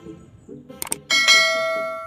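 A sharp mouse-click sound effect, then a bright notification-bell ding that rings out and fades, about a second in. This is the clicked-bell sound of a subscribe-button animation, over soft rhythmic background music.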